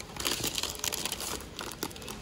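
Plastic-film bag of sugar crinkling as a hand grabs it and pulls it from a shelf tray, in irregular crackles.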